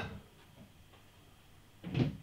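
A person's short sniff, smelling a beer's aroma from the glass, heard once near the end; the rest is quiet.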